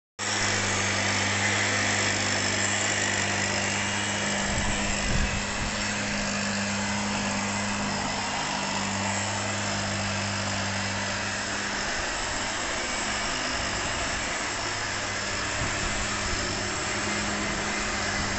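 Backpack motorized mist blower (sprayer) with its small two-stroke engine running steadily, with the rush of its air blast as it sprays.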